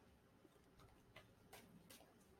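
Near silence, with three faint ticks in the second half.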